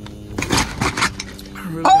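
A quick run of short scrapes and clicks as a fanny-pack holster bag is pulled open and a pistol is drawn from it.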